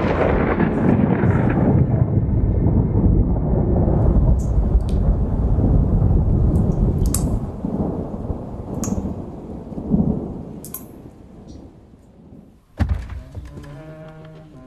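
A deep, dense rumble like thunder, loud at first and fading away over the last few seconds, with scattered sharp clicks through it and one sudden hit near the end.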